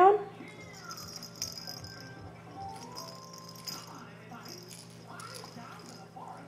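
Soft rattling from a baby's plush toy being handled and mouthed, a light jingly hiss through about the first half.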